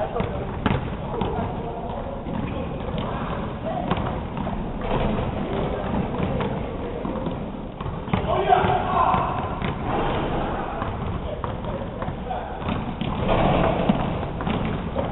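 Basketball being dribbled on a hardwood gym floor, a series of sharp bounces, with indistinct voices in the background that rise about eight seconds in and again near the end.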